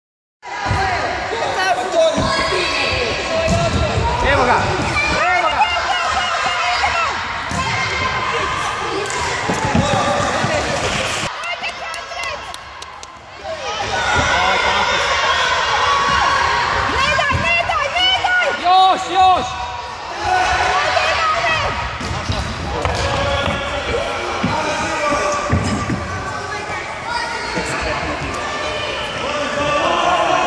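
A handball bouncing and thudding on a wooden sports-hall floor during a children's match. Players and spectators shout almost throughout, loudest about two-thirds of the way in.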